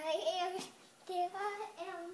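A young girl singing short held notes in three brief phrases.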